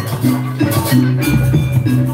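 Jaranan gamelan accompaniment, loud over a PA: drums and tuned metal percussion playing a steady, repeating pattern of low tones.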